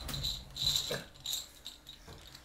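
Connect Four game discs being released from the plastic grid, clicking and clattering lightly onto a wooden table as the board is emptied after a game.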